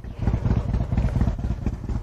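A 2007 Harley-Davidson Street Glide's 96 cubic inch V-twin running at idle through a Rinehart True Dual exhaust, a steady string of low, uneven exhaust pulses.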